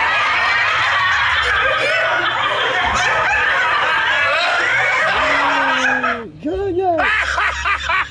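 Many voices laughing and chattering at once, loud and unbroken until about six seconds in, then a few short swooping voice sounds that bend up and down in pitch.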